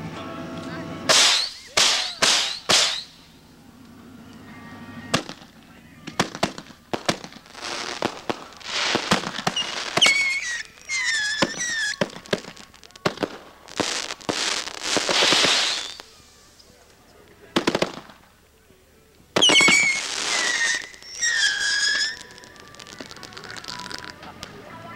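Consumer fireworks going off: a quick run of sharp bangs about a second in, then repeated bursts of hissing and crackling over the next twenty seconds, with high wavering tones about ten and twenty seconds in.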